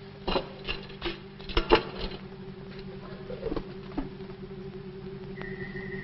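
A few scattered knocks and clatters, loudest about a second and a half in, over a low steady drone.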